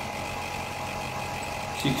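Air-conditioner outdoor unit (compressor and condenser fan) running with a steady hum while refrigerant gas is being topped up through the gauge manifold.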